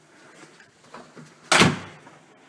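A door knocks once, a single sudden thud about one and a half seconds in that fades out within half a second.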